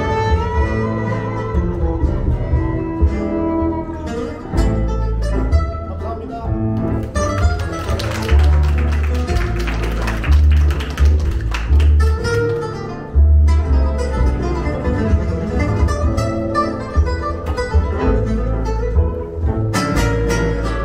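Live gypsy jazz band playing: violin melody over acoustic guitar and upright double bass, with a keyboard. About eight seconds in comes a few seconds of fast, dense playing before the tune settles back.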